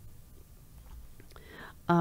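A pause in a woman's speech, with only low room tone. A faint in-breath comes about a second and a half in, and her voice resumes just before the end.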